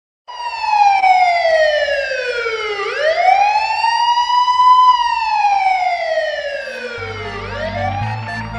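Police siren wailing in slow sweeps, its pitch falling and rising about every two and a half seconds. A deep, bass-heavy music beat comes in near the end.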